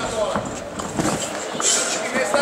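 Indistinct voices and shouts in a large sports hall, with a few short dull thuds from the kickboxers moving and striking in the ring.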